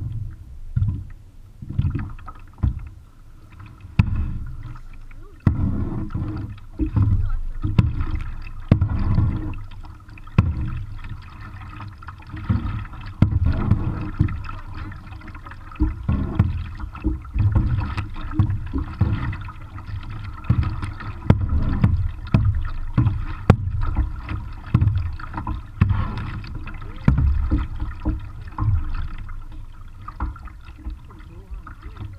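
Kayak paddle strokes about once a second, the blades dipping and splashing in the water, each stroke carrying a low thump.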